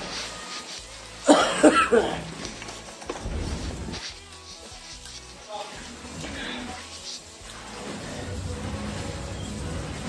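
A short cough about a second in, the loudest sound here, over quiet background music.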